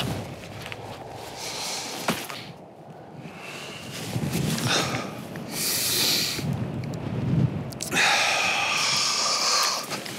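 A man breathing hard in heavy, breathy exhales, winded from climbing a steep snowy ridge, with a single sharp click about two seconds in.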